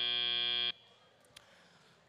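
Robotics competition end-of-match buzzer: a steady buzzing tone that cuts off suddenly under a second in, signalling the match is over. Quiet hall noise follows, with one faint click.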